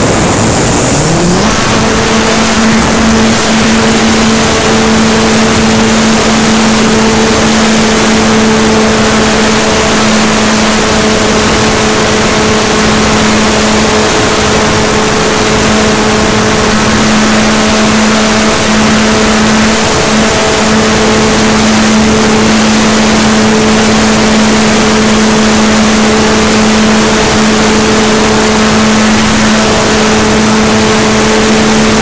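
RC model aircraft's motor and propeller heard from an onboard camera: a hum rises in pitch in the first second or so as the throttle comes up, then holds one steady tone for the rest of the flight, under a loud rush of airflow over the microphone.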